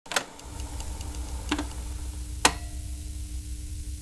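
Steady low electrical hum from studio gear, with three sharp clicks about a second apart.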